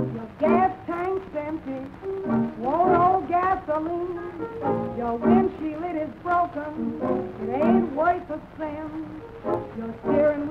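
Late-1920s jazz band recording playing an instrumental passage, with sliding, smeared rising notes and a steady beat. The sound is thin, with little top end, as old recordings have.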